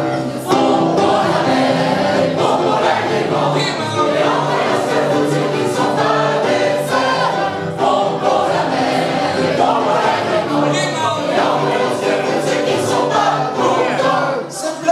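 A group of voices singing a French song together in chorus, choir-style, with many voices holding notes at once.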